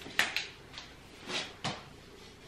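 Telescoping ring light stand being raised by hand: a few sharp clicks and knocks from its sliding sections and lock. Two come close together near the start and are the loudest, and a last sharp click comes just before the end.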